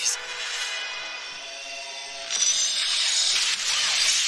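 A film soundtrack: a dramatic music score with long held tones. About halfway through, a louder rush of action noise swells in over it.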